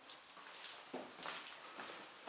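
Faint footsteps on concrete stairwell steps, a few soft scuffing steps about a second in.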